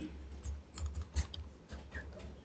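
A string of faint, irregular key clicks, like keys being pressed to work out a figure, with the clearest click about a second in.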